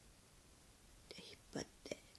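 A woman's soft whispered murmur, a few short breathy sounds in the second half, after a moment of near silence.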